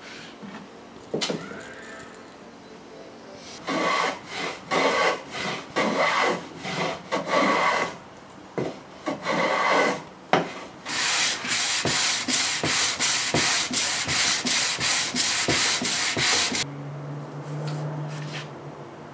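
A hand plane shaving a wooden box made of laminated softwood: irregular rubbing strokes at first, then a run of quick, even strokes, about three a second, that stops shortly before the end. A steady low hum follows.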